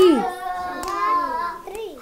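A hand clap on the counted word 'three', then a voice holds a long sung vowel at a steady pitch for about a second and a half. A fainter clap comes partway through.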